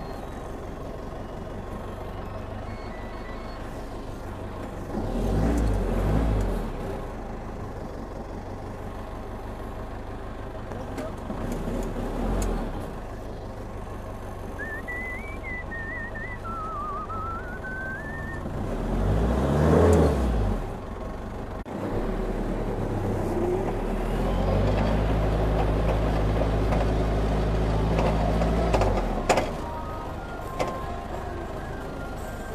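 An old forklift's engine running while it is driven, surging louder several times as it is revved: around 6 s, 12 s, 20 s, and for a longer stretch from about 24 to 29 s.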